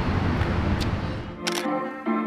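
Outdoor street noise with a low rumble, then a single camera-shutter click about one and a half seconds in, as background music with held notes begins.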